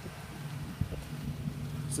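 Low steady hum of a running vehicle engine, growing a little stronger about a second in, with wind rumbling on the microphone.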